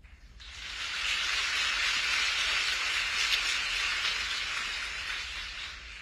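Audience applause, building up within the first second, holding steady, then tapering off toward the end.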